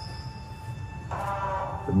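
Background music with steady held tones, joined by a fuller sustained chord about a second in.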